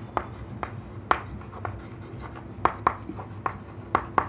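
Chalk writing on a chalkboard: a string of irregular sharp taps and short scrapes as letters are stroked out.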